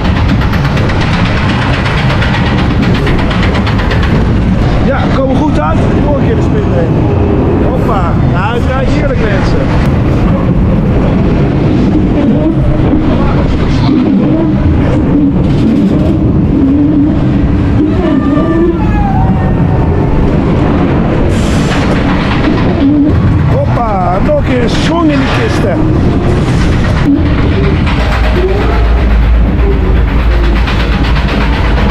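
Reverchon spinning wild mouse coaster car running along its steel track: a loud, steady rumble of the wheels with wind noise on the microphone. Riders' voices call out a few times.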